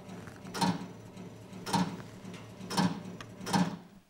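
Fruit-machine (slot machine) reel sound effect: a steady mechanical ticking clatter of spinning reels, with four clunks about a second apart as the reels stop one by one.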